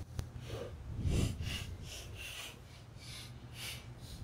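Hand ratchet with a 10 mm socket loosening motorcycle cam-holder bolts, its pawl clicking in short bursts on each back-swing, repeating about once or twice a second over a low steady hum.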